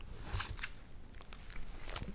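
Faint, scattered crinkles and clicks of a plastic comic book bag being handled.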